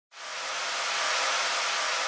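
Steady white-noise hiss like television static, fading in from silence over about half a second and then holding level.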